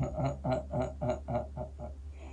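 A man laughing: a quick run of about eight short 'ha' pulses, about four a second, that grow fainter toward the end.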